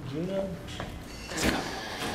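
Quiet, indistinct talking in the first half second, then a short hissing burst about one and a half seconds in.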